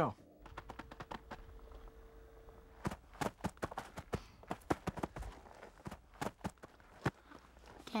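Foley footsteps for a bear cub, made by leather-gloved hands patting and pressing on a dirt-and-sand floor: faint at first, then a run of irregular soft thumps and pats from about three seconds in. A faint steady tone sounds under the first three seconds.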